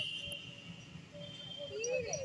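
Faint outdoor background with birds calling: a thin high whistle that fades within the first half-second, then a few short high chirps near the end.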